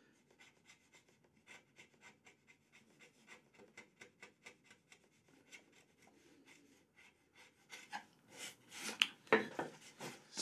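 Bench chisel held flat, paring thin shavings off the floor of a rebate in a wooden board: a quick series of short, faint scraping cuts. A few louder rubbing sounds come near the end.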